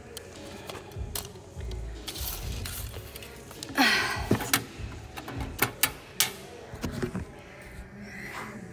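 Handling noise as a steel tape measure is pulled out and held against a plywood plyo box: rubbing and rustling, with a longer rustle about four seconds in and several sharp clicks about a second later.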